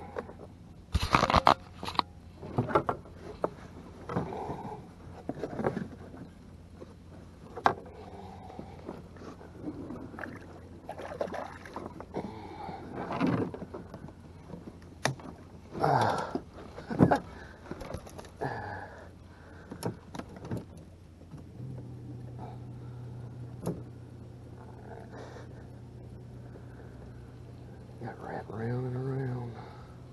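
Knocks, clatters and scrapes of hands and fishing gear against a plastic boat hull while a hooked bass is worked free of a snagged limb. About three-quarters of the way through a steady low hum starts and holds.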